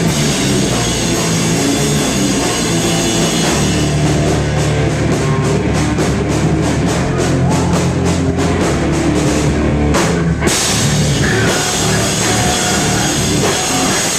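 Live heavy rock band playing loud: drum kit, distorted electric guitars and bass. From about four seconds in the riff turns choppy, about three hits a second, then breaks off briefly around ten seconds in before the band comes back in, with a vocalist's voice over it near the end.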